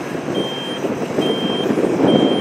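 Reversing alarm of a tandem asphalt roller beeping, a single high tone about half a second long repeating a little more than once a second, over the steady noise of the roller's engine.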